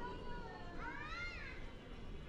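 A short high-pitched cry about a second in, rising and then falling in pitch, over the steady murmur of an airport terminal.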